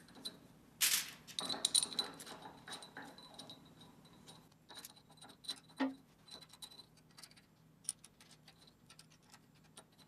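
Small metallic clinks and taps of a metal spindle cover plate and its screws being handled and fitted by hand. The sharpest clink comes about a second in, followed by scattered lighter ticks that thin out.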